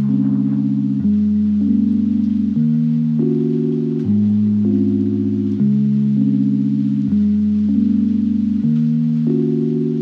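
Background music: slow, sustained low chords that change about every one and a half seconds, with no beat.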